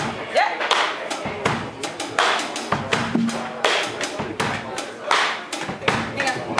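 Live band playing a song with sharp, frequent drum hits, with a voice calling out over it.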